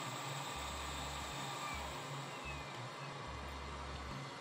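Steady, even hiss of workshop background noise, with a faint low hum that cuts in and out several times.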